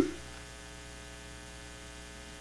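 Steady electrical hum with a thin buzz on the recording line.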